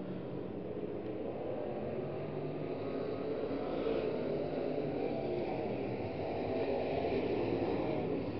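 Field of dirt-track B-Mod race cars' engines running at racing speed on the oval, blending into one continuous drone that swells slightly as cars pass.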